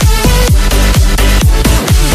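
Electronic dance music with a steady, heavy beat: deep bass hits that drop in pitch a few times a second, under a synth melody.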